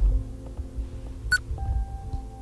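Ambient drone background music with long, steady tones. A low thump comes right at the start, and a brief sharp high click comes a little past halfway.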